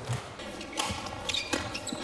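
Badminton rackets hitting the shuttlecock in a fast doubles rally: about three sharp hits, each under a second after the last.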